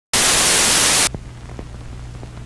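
Loud burst of TV-style static hiss that starts suddenly and cuts off after about a second. It gives way to a much quieter hiss with a steady low hum and faint crackles.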